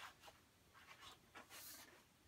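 Faint rustling of large paper sheets being handled: a few soft brushes and slides, mostly in the second half.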